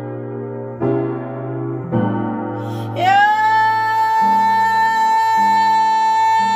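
A woman singing gospel while accompanying herself on piano: chords are struck three times in the first two seconds. About three seconds in she slides up into one long, steady high note held over repeated piano chords.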